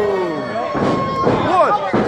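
Ringside spectators shouting and yelling, a drawn-out falling call followed by several short rising-and-falling shouts near the end.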